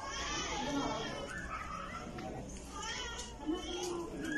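Indistinct background chatter: several voices talking at once, none clearly, some of them high-pitched, over a low steady hum.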